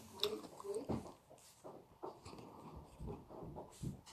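A person chewing food close to the microphone, with irregular soft mouth noises and clicks.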